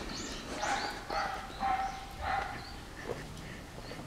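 An animal calling over and over, about two short calls a second.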